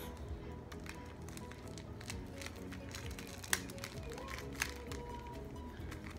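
Soft background music, with a few short clicks and taps from handling the moss-wrapped plant, the sharpest about three and a half seconds in.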